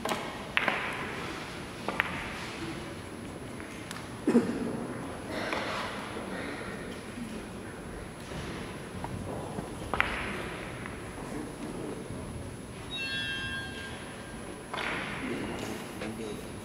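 Scattered sharp clicks of carom balls striking one another, echoing in a large hall, with a heavier thud about four seconds in as the loudest sound.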